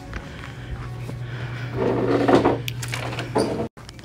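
Indoor store background: a steady low hum, with a louder, brief noisy sound about two seconds in and a short dropout near the end.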